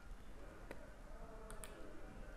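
Faint computer clicks over low room hiss: one about two-thirds of a second in and a quick pair near the end, as the next bullet of a presentation slide is brought in.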